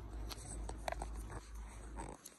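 Faint rustling and a few small clicks of fingers folding and handling a small paper sticker.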